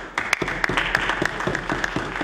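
Members of a legislative chamber applauding: many hands clapping at once in a steady patter.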